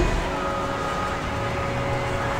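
Steady background noise with a low rumble and two faint held tones, no sudden events.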